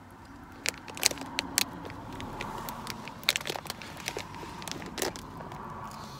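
Irregular sharp crackles and crinkles as a toddler eats crisps: crunching and the rustle of the snack.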